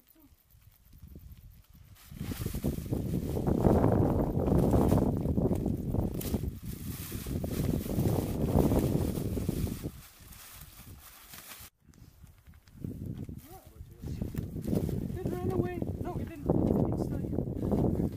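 Rustling and crinkling of a foil rescue blanket being handled close to the microphone, in dense, irregular bursts. After a cut, quieter rustling continues with brief indistinct voices.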